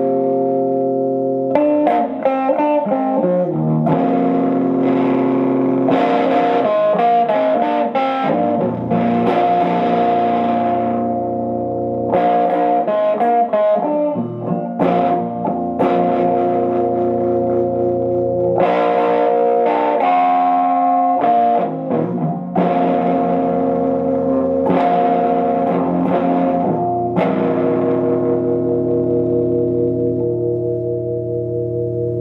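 Electric guitar played through a 1997 Fender Blues Jr. tube combo amp with a full Fromel electronics mod: chords struck and left to ring, with quicker runs of notes in between.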